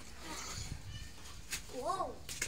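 A short pitched call that rises and falls in pitch near the end, just after a single sharp knock. Faint voice-like sound comes earlier.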